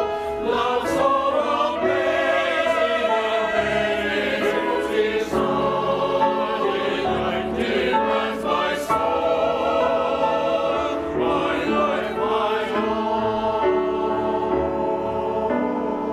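Mixed-voice church choir of men and women singing a choral piece together in parts, at a steady, full level.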